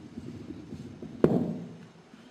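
Handling noise from a microphone being adjusted on its stand: a low rubbing rumble, then a single sharp knock on the microphone a little over a second in, the loudest sound, dying away quickly.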